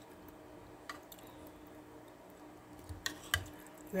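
Faint steady hum with a few soft clicks of a spoon and mouth as soup is eaten: one click about a second in and a couple more near the end.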